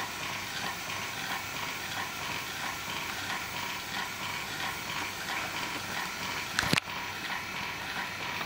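Steady background hiss with no clear rhythm, broken by one sharp knock about seven seconds in.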